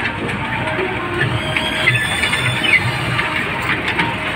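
A small electric fairground kiddie train rolling past on its curved track, with squeaky high tones around the middle, over fairground music with a steady beat.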